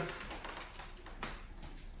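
Low room sound with a few faint taps on a hardwood floor, from footsteps and small dogs moving about.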